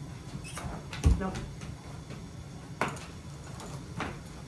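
A single heavy, dull thump on a wooden floor about a second in, with lighter knocks and scuffs before and after it as a puppy and a person move about on the boards.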